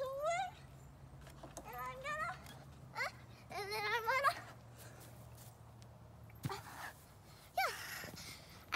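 A young girl's high-pitched wordless voice: several short sing-song calls that slide up and down in pitch, over a low steady hum that stops about six and a half seconds in.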